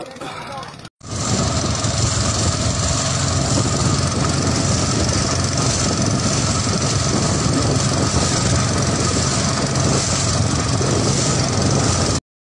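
Steady, loud wind noise that starts abruptly about a second in and holds without a break.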